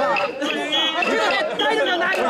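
Many mikoshi bearers' voices calling out together at once, loud and overlapping, as they carry the portable shrine on their shoulders.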